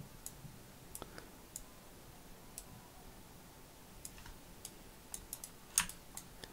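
Computer mouse clicking: about a dozen sharp, irregular clicks, bunched near the end, with the loudest one just before the end.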